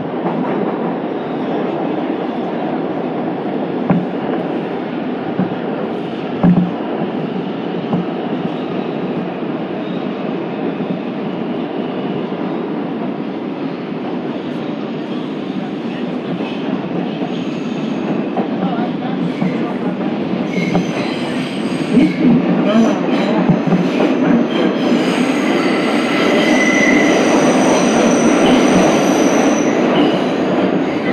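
Bombardier R142 subway car running through a tunnel: a steady rumble of wheels on rail, with a couple of sharp thumps early on. From about two-thirds of the way in, high squealing tones join and grow louder as the train comes into the station.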